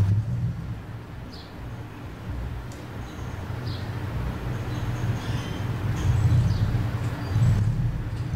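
A steady low rumble of background noise that swells and fades, with a few faint short high chirps over it.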